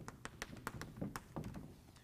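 Chalk tapping and scraping on a blackboard as a word is written: a quick, irregular run of sharp taps that thins out about a second and a half in.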